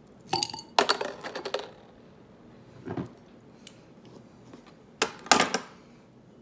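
Metal bottle opener clinking and scraping against the crown cap of a glass bottle as the cap is pried off, in two bursts of sharp clicks about four seconds apart, with a softer knock between them.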